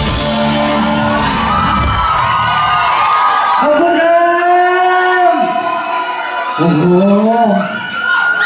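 A live pop band with bass, drums and saxophone plays the closing bars of a song and stops about three seconds in. A male singer then holds one long final note, and near the end the crowd cheers and whoops.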